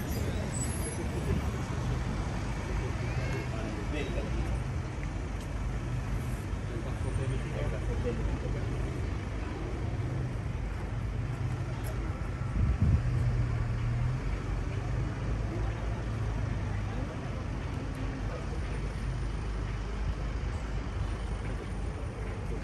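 Outdoor city street sound: a steady low rumble of road traffic with indistinct voices of passers-by. A brief thump stands out about two-thirds of the way through.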